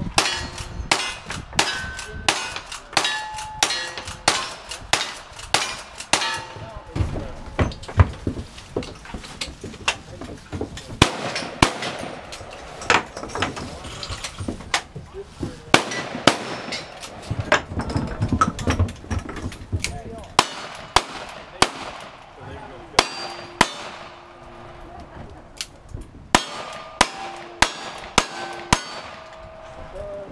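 A cowboy action shooting stage being run: a long string of gunshots, many followed by the ringing clang of steel targets being hit, with a few short breaks as the shooter changes guns.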